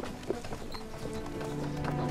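A horse's hooves clip-clopping in a few uneven steps. Background music comes in about a second in with held low notes.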